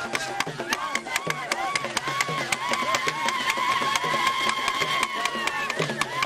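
Traditional folk-dance music played live: a hand drum beating a steady rhythm about three times a second, with many sharp percussive strokes over it and a crowd of voices singing and shouting. A long high note is held from about two seconds in to near the end.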